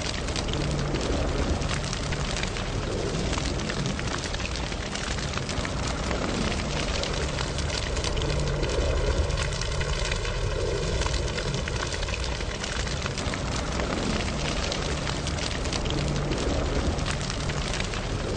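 Fire-like sound effect for an animated flaming logo: a steady rush of noise over a low rumble. In the middle, a hollow, sweeping whoosh passes through it and fades.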